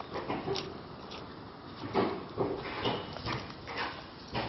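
Short animal calls, several of them, separate and brief, most of them bunched in the second half.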